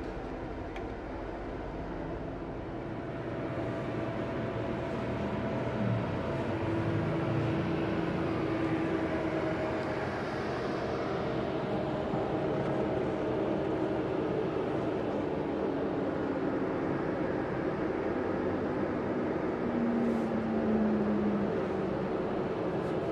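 Bus cabin noise: the Scania K410IB coach's engine running steadily, heard from inside, with a few long drawn-out tones that shift slowly in pitch. It grows somewhat louder a few seconds in.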